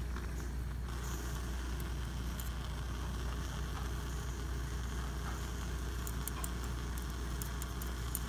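Steady low background hum, with a few faint small clicks and crinkles as a stone cast wrapped in tinfoil and a metal framework are handled, more of them near the end.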